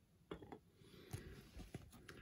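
Near silence with a few faint, short clicks of trading cards being handled and set on a clear plastic display stand.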